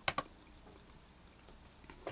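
Computer mouse button clicked twice in quick succession, selecting an on-screen tab; faint room tone follows.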